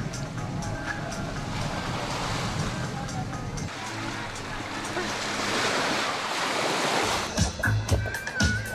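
Sea waves washing onto a sandy shore, a steady rushing noise that swells and fades. Faint background music is underneath at the start, and louder voices or music come in near the end.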